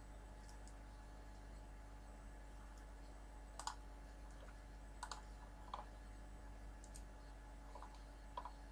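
Near silence over a low steady hum, broken by a handful of faint, sharp computer mouse clicks, the clearest a little before the middle.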